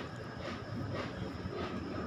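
Steady background rumble and hiss of ambient noise, with no distinct event standing out.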